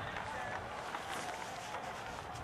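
Distant shouts and calls of lacrosse players across an open field, faint over a steady outdoor hiss.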